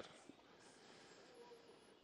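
Near silence: only a faint, steady background hiss.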